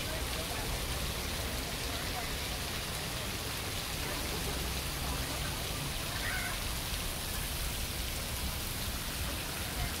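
Water-curtain fountain: thin streams of water falling from an overhead pipe into a shallow pool, a steady rain-like patter.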